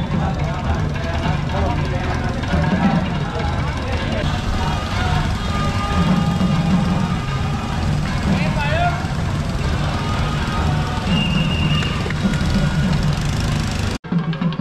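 A group of men's voices chanting together in held phrases as the temple procession moves, over steady street and vehicle noise.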